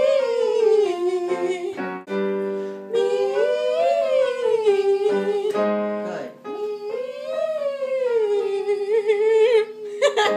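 A woman singing vocal warm-up exercises: three sung phrases, each rising and then falling in pitch, with an accompanying instrument sounding held notes that begin just before each phrase.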